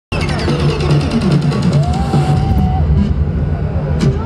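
Loud electronic dance music from a festival sound system, with a heavy bass beat. About two and a half seconds in, the highs drop away and the bass carries on.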